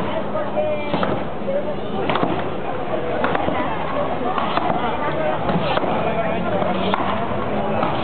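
Two aizkolaris chopping, with axes biting into the horizontal logs they stand on: a sharp strike about once a second, with fainter strikes from the second axeman in between, over crowd chatter.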